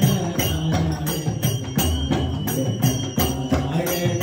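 Live devotional bhajan music: tabla and jingling metal percussion keep a quick, steady beat over sustained held notes.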